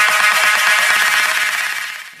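Rock music with distorted guitar in a fast pulsing rhythm, fading out near the end.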